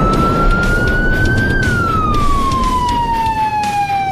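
A siren wail: one tone that climbs slowly, peaks about a second and a half in, then falls away, over a loud rumbling noise bed.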